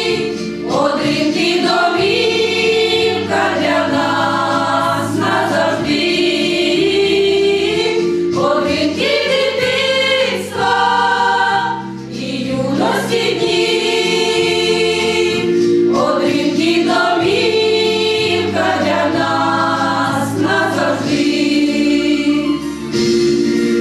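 Women's vocal ensemble singing a slow song in harmony: long held notes in phrases of a few seconds, with brief breaks between phrases.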